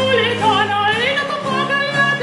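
Soprano singing an early Baroque Italian song in a theatrical style, her voice gliding up and down in pitch with vibrato, over a continuo of harpsichord, plucked theorbo and cello. A low held bass note sounds beneath her and drops out just after a second in.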